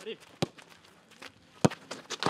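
A football being struck: two sharp thuds about a second apart, the second the louder, after a short shout.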